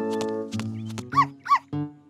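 A cartoon dog barking twice in quick succession, a short rising-and-falling yelp each time, about a second in, over children's cartoon background music.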